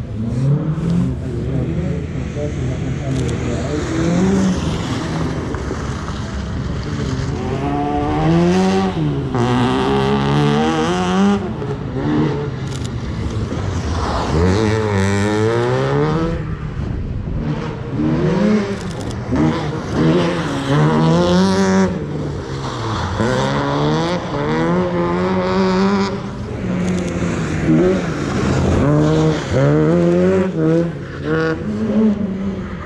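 A competition car's engine revving hard, its pitch climbing and falling back again and again as the driver works the throttle and gears around a cone course.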